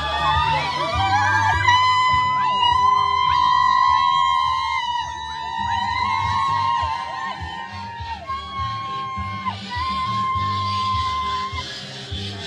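Music with a steady bass pulse and a high melody line of long held notes, the melody breaking into shorter phrases after about eight seconds.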